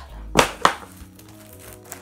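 Two sharp cracks about a quarter of a second apart near the start, from hands handling small stationery: a marker and a strip of plastic-backed sticker labels. Background music plays underneath.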